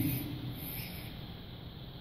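Quiet room tone of a lecture hall: a faint, steady background hiss, with the tail of a man's amplified voice dying away at the start.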